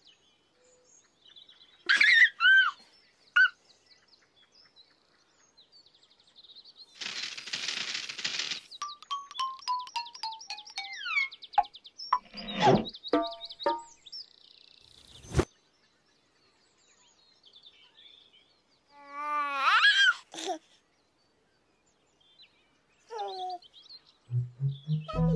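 A series of whimsical cartoon sound effects with quiet gaps between them: whistling chirps, a burst of hiss, a descending run of short beeping notes, a sharp click, and a rising warbling glide. They mark the pumpkin's face pieces vanishing one by one.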